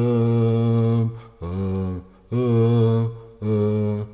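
A low male voice chanting in a mantra-like style: four long held notes, each about a second, with short breaks between them and the pitch stepping down and back up.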